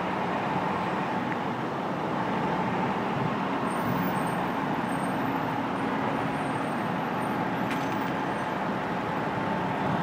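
Steady street traffic noise with the engines of heavy emergency trucks running, a low even hum with no sirens.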